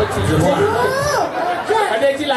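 Speech: a performer talking into a microphone, her voice amplified, with one drawn-out word whose pitch slides up and then drops.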